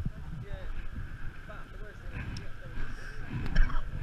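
Wind buffeting the camera's microphone, a low rumble, with faint voices in the background and a couple of knocks near the end.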